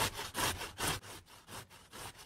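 Rhythmic rasping, scraping strokes, about two and a half a second, even and regular like back-and-forth rubbing.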